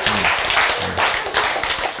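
Audience applause: many hands clapping steadily.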